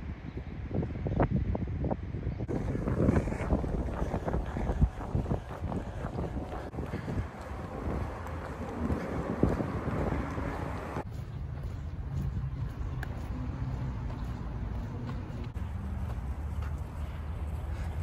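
Wind buffeting the microphone outdoors, with scattered thumps, changing about two-thirds of the way through to a steadier low rumble.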